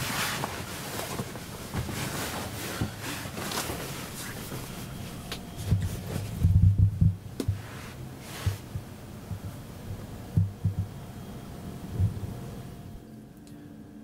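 Rustling and soft bumps of a person shifting about and lying down on upholstered RV bed cushions, with a cluster of heavier thumps about six to seven seconds in and a few single bumps later.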